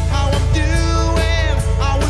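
Drum kit with Zildjian cymbals played along to a pop-rock song recording, with a male lead vocal singing over a steady beat.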